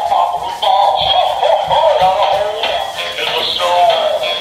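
Animated plush reindeer toy singing a song through its small built-in speaker, a thin, tinny sound with little bass.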